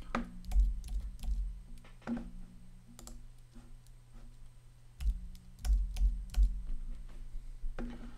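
Scattered clicks of a computer keyboard and mouse, with a few dull low thumps about half a second in and again around five to six and a half seconds in, over a steady low hum.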